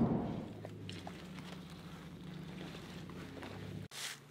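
Faint, steady low drone of engine and road noise inside a moving vehicle's cabin. It cuts off suddenly near the end.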